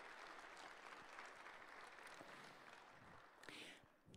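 Near silence: faint room tone that fades almost to nothing near the end.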